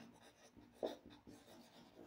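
Faint marker pen writing on a whiteboard: a few short, soft strokes, the clearest a little under a second in.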